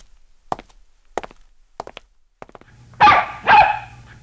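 A few short, sharp clicks about two-thirds of a second apart, then a dog barking twice near the end.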